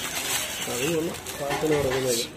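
Crinkly paper food wrapper rustling and crackling as it is pulled open by hand, with faint voices in the background.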